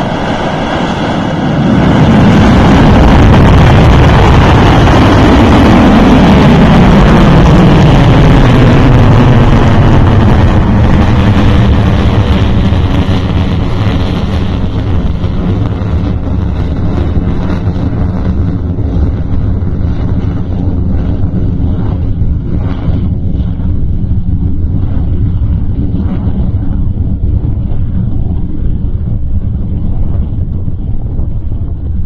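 Kuaizhou-1A small solid-fuel rocket firing at liftoff: a loud, deep rumble that builds over the first two seconds, then slowly thins and fades as the rocket climbs away.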